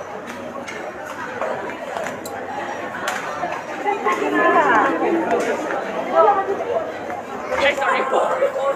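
Indistinct chatter of many voices, with a nearer voice standing out louder about halfway through.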